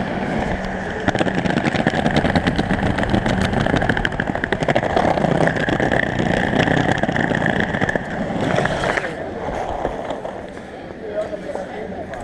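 Skateboard wheels rolling over brick paving, a steady rumble with a rapid clatter of clicks from the joints between the pavers. The rolling dies away about nine seconds in.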